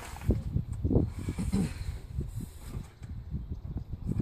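A cloth towel rubbing and wiping along a wet window frame and sill in short, irregular strokes, over a low rumble of wind on the microphone.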